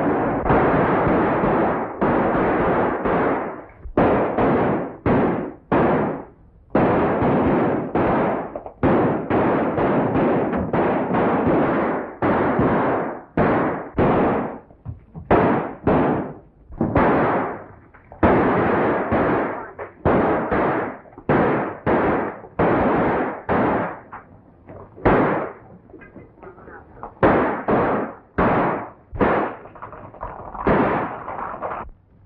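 Gunfire on a 1930s film soundtrack: a long, irregular volley of shots, one or two a second, each a sharp crack with a short ringing tail, thinning out briefly a little after the middle of the second half.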